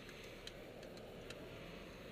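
Car turn-signal indicator clicking steadily inside the cabin while the car turns, over a low hum of engine and road noise.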